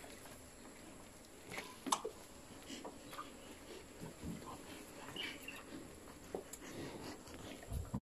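Calves suckling and licking: faint, scattered wet smacking clicks and soft rustles, with a few slightly louder clicks.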